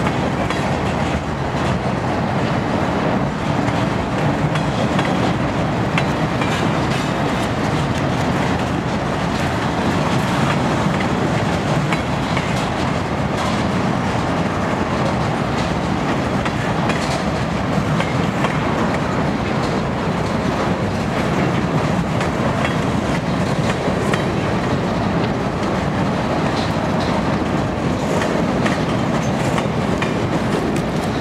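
A freight train's cars rolling steadily past on steel wheels, a constant rail noise with scattered sharp clicks. The cars are boxcars and centerbeam flatcars.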